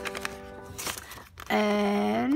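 Last piano chord of a carol ringing on and fading, with a short rustle of paper just before a second in. A woman's voice starts about one and a half seconds in with a drawn-out, held sound.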